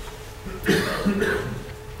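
A man coughing once, starting a little over half a second in and fading within about a second.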